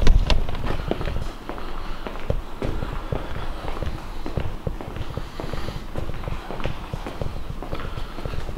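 Footsteps on a concrete floor, with the knocks and rumble of a handheld camera being carried; a loud knock right at the start.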